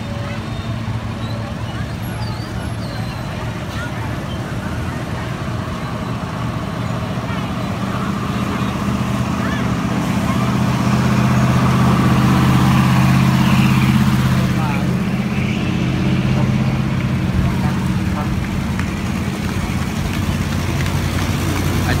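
Night road traffic of motorbikes and cars: engines running with a steady low drone that builds to its loudest a little past the middle and then eases, over a general street din with people's voices.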